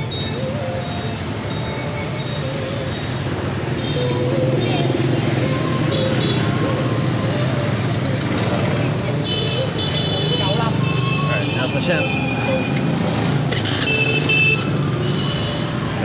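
Busy street traffic of motorbikes and scooters running past at close range. Horns beep a few times near the middle and near the end.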